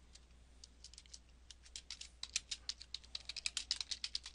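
Typing on a computer keyboard: a few scattered keystrokes at first, then a quicker run of key clicks over the last two seconds or so.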